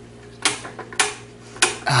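Pie Face game's hand crank turned three times in quick succession, each turn a sharp click about half a second apart. A short 'ah' from a voice comes at the very end.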